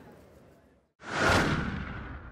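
Outro logo sound effect: a sudden whoosh with a deep boom about a second in, loudest at once and then dying away. Before it, faint court ambience fades out.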